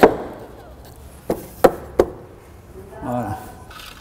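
Solid kohu hardwood floorboard offcut knocking against the wooden joists as it is set in place: one sharp knock at the start, then three quick wooden knocks about a third of a second apart a little after a second in.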